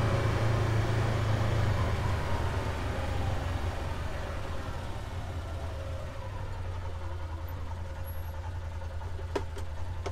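A utility vehicle's engine running steadily and slowly fading, over a low wind rumble on the microphone. A couple of light clicks come near the end.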